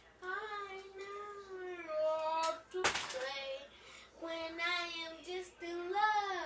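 A young girl singing alone without accompaniment, in long held and gliding notes. A single sharp knock cuts in a little before three seconds in.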